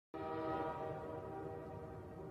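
A train horn blowing one long chord of several steady tones. It starts suddenly just after the opening and slowly fades.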